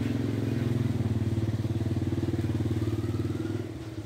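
An engine running with a steady low hum, growing louder through the first second and fading away near the end, like a vehicle going by.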